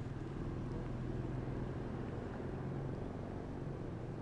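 A car driving slowly past, its engine a steady low hum.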